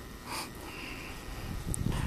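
A person breathing close to the microphone between spoken phrases, with a breath about a third of a second in. A low rumble builds in the second half.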